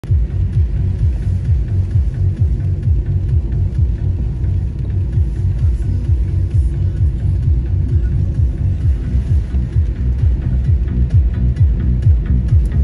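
Background electronic music with a heavy, fast bass beat.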